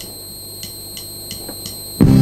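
A drummer's count-in: four short, even clicks, about three a second, over a steady high-pitched electronic whine, with the full band coming in right on the next beat at the very end.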